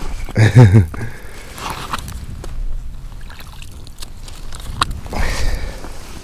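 Low rumble and scattered irregular clicks of handling while a fish is reeled up through an ice hole on a spinning rod, with a short low vocal grunt about half a second in.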